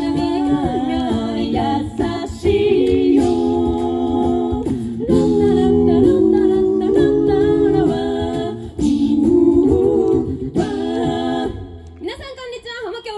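Mixed a cappella group of five voices singing close sustained chords, amplified through stage microphones and speakers, in phrases with short breaks between them. The singing fades out near the end.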